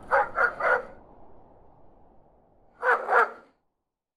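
A dog barking: three quick barks right at the start, then two more about three seconds in, over a faint background that fades away.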